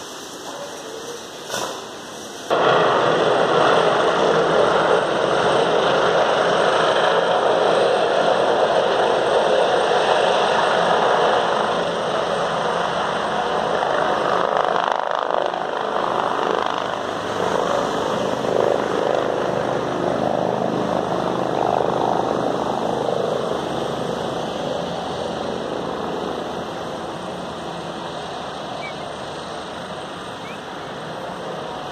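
Loud, steady roar of road traffic that starts abruptly about two and a half seconds in and eases off slowly over the last third.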